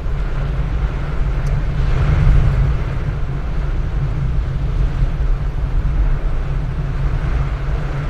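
Steady car-cabin noise while driving on a rain-soaked road: a low engine and tyre rumble under a hiss of rain and wet-road spray, swelling slightly about two seconds in.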